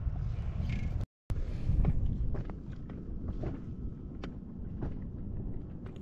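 Low wind rumble on the microphone with scattered small clicks and knocks from handling fishing tackle in an inflatable boat; the sound cuts out briefly about a second in.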